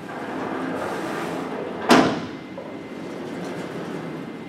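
Vertically sliding whiteboard panels being pushed along their tracks: a rumbling slide that ends about two seconds in with a sharp knock as a panel hits its stop.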